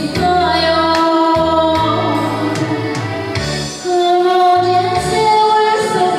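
A woman singing a Korean popular song (gayo) into a microphone, holding long notes over an instrumental backing with low bass notes and a steady beat.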